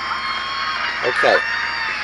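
FM radio broadcast, music, playing from a Panasonic car stereo through a small speaker at a steady level; the reception is clean.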